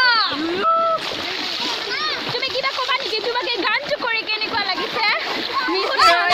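Splashing in shallow muddy paddy-field water under a continuous wash of noise, with many short excited shouts and calls from children and young people over it.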